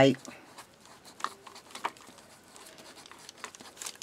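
Dual-nib double-line marker pen writing on paper: faint scratching strokes with a few sharper ticks as the nibs touch down.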